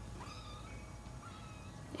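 Three-week-old kittens mewing faintly: two short, high-pitched mews, the first about a quarter second in and rising slightly in pitch, the second just after a second in.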